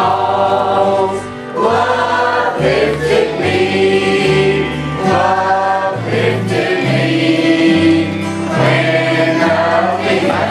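A mixed choir of men and women singing a gospel hymn in unison over strummed acoustic guitar and a walking bass guitar line.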